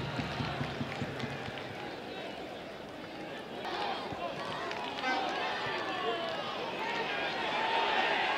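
Several voices calling and shouting on a football pitch, short overlapping calls over a steady outdoor background, growing busier about halfway through.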